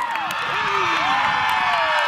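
A group of girls screaming and cheering together, with long high-pitched shrieks that slide slowly downward in pitch.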